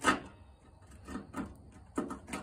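Handling noise from working with small tools and parts: a sharp click at the start, then two faint short knocks a little over a second in and another click near the end.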